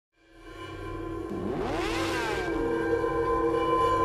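Intro logo music: a sustained chord fading in from silence, with a sweeping whoosh whose pitch rises and then falls from about one and a half to two and a half seconds in.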